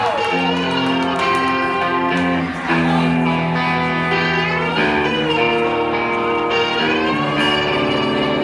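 A live rock band plays with amplified electric guitars and sung vocals, the notes held and stepping with some gliding pitches.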